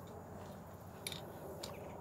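Faint, steady background hiss with two faint short clicks, one about a second in and another about half a second later.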